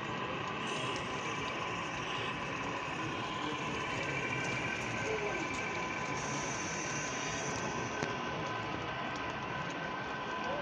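A model train running along the layout track, a steady rolling rumble of wheels and motor over the constant background noise of a busy hall.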